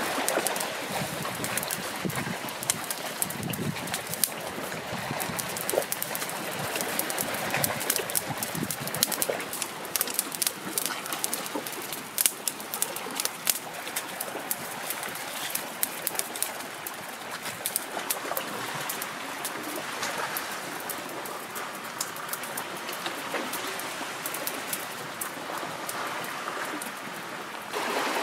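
Small fire of dry twigs crackling, with many sharp pops over a steady outdoor hiss.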